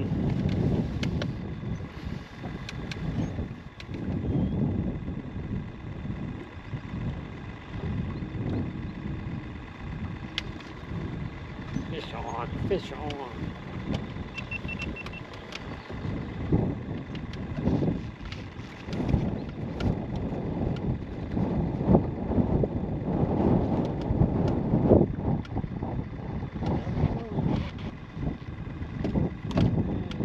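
Wind rumbling on the microphone in an open fishing boat, with scattered clicks and knocks from handling a spinning rod and reel. A short high beep about halfway through.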